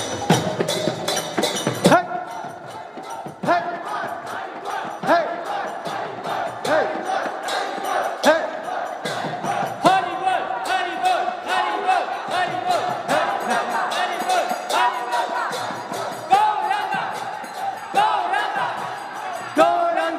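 Congregational kirtan: a crowd of voices chanting and calling out together, with swooping shouts about every second and a half and a held sung note in the second half. Hand cymbals keep up a fast, steady clicking beat underneath.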